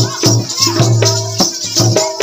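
Live Odia danda nacha folk music: drum strokes and a rattling percussion keeping a steady beat over a sustained low pitched note.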